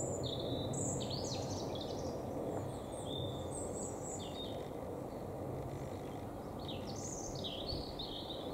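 Small birds chirping in short high calls, in small groups near the start, around the middle and near the end, over a steady low rumble that fades slightly.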